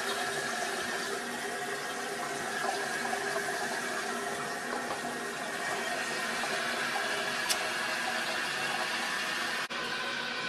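Toilet running: a steady rush of water with a faint high whistle over it.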